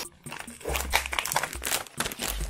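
Foil-backed plastic packaging bag crinkling and crackling as hands open it and reach in for the garment inside, with a few low handling bumps.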